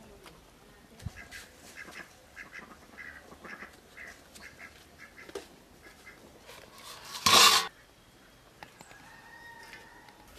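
Domestic fowl calling in a string of short, repeated calls. About seven seconds in comes a single loud, harsh burst lasting half a second, the loudest sound.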